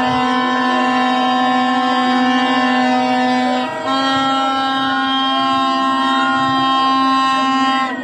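Plastic horns, vuvuzela-style, blown in long steady blasts, several at once, with a brief break about three and a half seconds in.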